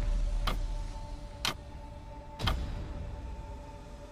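Countdown timer sound effect: three clock-like ticks about a second apart over a faint steady tone, with the louder background music fading away in the first second.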